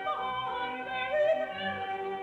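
Recorded operatic singing with orchestral accompaniment: a voice sings wavering notes with vibrato over held chords.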